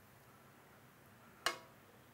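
Quiet kitchen room tone with a single sharp clink of metal kitchen tongs, ringing briefly, about one and a half seconds in.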